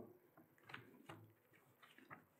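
Near silence with a few faint ticks and soft rustles of thin Bible pages being turned by hand.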